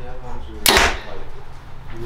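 A Prime Inline compound bow being shot: a single sharp crack as the string is released and the arrow leaves, about two-thirds of a second in.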